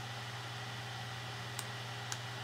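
Steady low hum and hiss of background noise, with a single faint click about three-quarters of the way through, typical of a computer mouse button.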